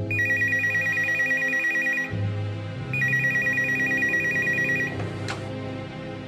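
An electronic desk telephone ringing twice, each ring a fast warble between two high tones lasting about two seconds, with a pause of about a second between rings.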